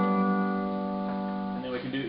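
A 10-string pedal steel guitar in an E6/9 tuning holds a ringing major-triad chord. The chord sustains steadily and fades out about a second and a half in.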